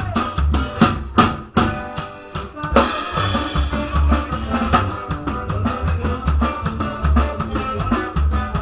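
A live band plays a quebradita with a steady bass-drum and snare beat on a drum kit. About a second and a half in the low end drops away under a run of drum strokes, and the full band comes back in just under three seconds in.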